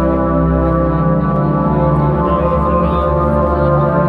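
Live band keyboard playing sustained organ-like chords over a deep low note, the chord shifting a couple of times, amplified through the arena's sound system.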